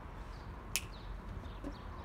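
Steady outdoor background noise with a few faint bird chirps, and one sharp click about three-quarters of a second in.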